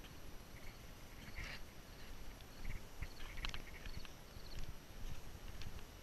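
Footsteps walking down wooden deck steps: irregular low thumps with light knocks of shoes on the boards.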